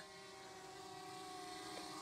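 Faint, steady buzz of the MJX Bugs 19 EIS mini quadcopter's propellers, growing slightly louder as the drone flies in towards the pilot.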